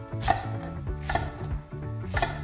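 Chef's knife slicing through a green onion onto an end-grain wooden cutting board: two crisp knife strikes about a second apart.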